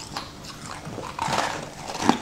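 Close-miked chewing of a frosted purple sweet: wet mouth clicks and a crackly crunch about a second in.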